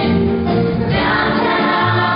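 Stage-musical ensemble chorus singing sustained notes in harmony over musical accompaniment, in a musical-theatre production number.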